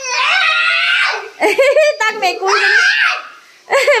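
Young boy crying loudly in long, high-pitched wails that waver in pitch, with a brief lull near the end.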